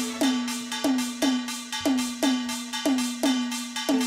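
Instrumental break in a live Rajasthani bhajan: a drum struck in a steady rhythm, about three strokes a second, each stroke sliding down in pitch, over a held low note.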